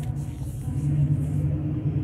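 A steady low hum with a faint rumbling background noise and no distinct events.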